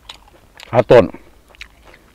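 A man chewing grilled field rat close to the microphone, small soft clicks of biting and chewing, broken about a second in by a short, loud voiced exclamation through a full mouth.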